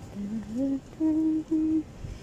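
A person humming a tune: a short rising phrase, then two held notes on the same pitch.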